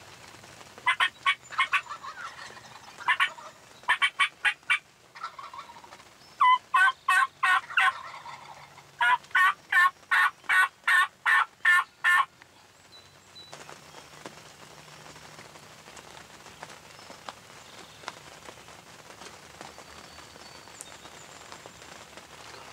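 Turkey calling: several runs of loud, evenly spaced yelping notes, about four a second, in bursts of a few seconds each. The calling stops about twelve seconds in.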